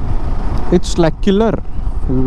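A motorcycle cruising steadily at about 50 km/h: a low, steady engine and road rumble, with wind hiss on the microphone.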